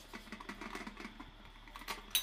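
Screwdriver backing a small screw out of the plastic cover-plate frame of a concealed flush cistern: faint, quick, irregular clicks, with a slightly louder click near the end.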